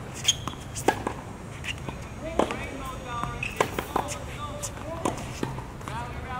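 Tennis rally on a hard court: a series of sharp pops from rackets striking the ball and the ball bouncing, several strikes a second apart.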